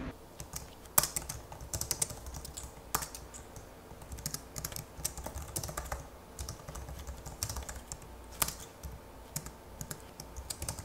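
Typing on a Xiaomi wireless Bluetooth keyboard with round keys: a quick, irregular run of light key clicks, with a few keystrokes sharper than the rest.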